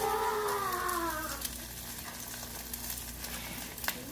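Pancakes sizzling in a pan on the stovetop, a steady crackling fry. Over the first second and a half a long, drawn-out voice-like call slides down in pitch, and a single click comes near the end.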